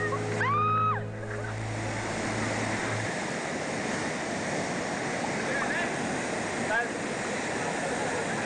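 Steady rush of a waterfall pouring into a churning rock pool. A single high, rising-then-falling shout rings out about half a second in as a swimmer leaps from the rocks, and a music track ends within the first three seconds.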